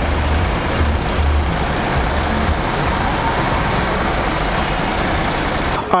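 Steady city traffic noise on a busy avenue, with the deep engine rumble of a bus driving past in the first couple of seconds.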